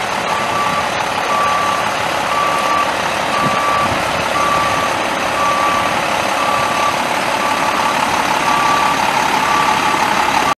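Truck backup alarm beeping steadily, about one beep a second, over a steady background of vehicle noise.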